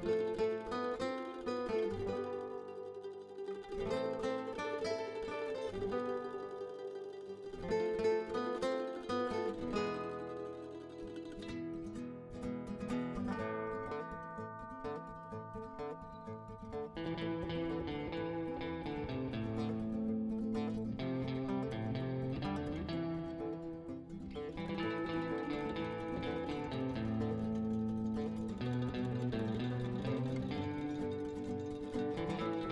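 Instrumental background music led by plucked strings, its arrangement filling out with lower notes a little past the middle.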